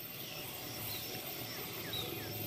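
Faint outdoor background noise with a few faint, short, falling bird chirps.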